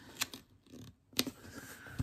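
Paper stickers being handled and pressed down onto a planner page: a few short, crisp paper snaps and rustles, the sharpest about a second in.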